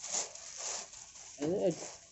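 Plastic garment packaging rustling in a quick run of short swishes as packed dresses are handled, followed by a brief voice about one and a half seconds in.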